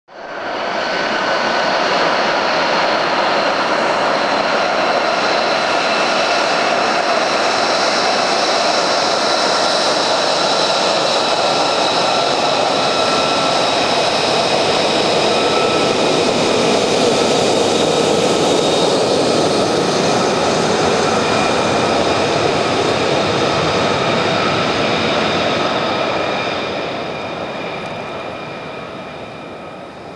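Lockheed Martin F-35 Lightning II's single Pratt & Whitney F135 turbofan running at taxi power: a loud, steady jet noise with a high whine of several steady tones. It fades over the last few seconds as the jet moves away.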